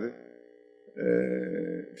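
Speech only: a man's voice stops, there is a short pause, and then comes a drawn-out hesitation sound, "uhh", held steady for about a second.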